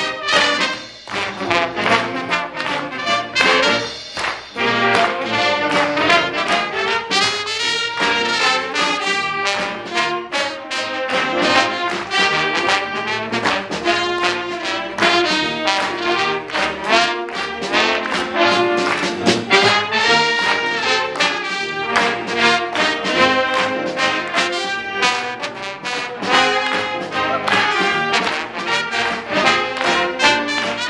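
A school jazz big band playing: saxophones, trumpets and trombones carry the tune over electric guitar, upright bass and a drum kit keeping a steady beat.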